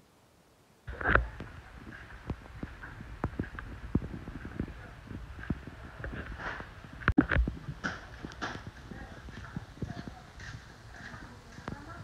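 Footsteps on a concrete floor with scattered knocks and clicks, starting after about a second of near silence, with a louder knock around seven seconds in. Faint voices in the background.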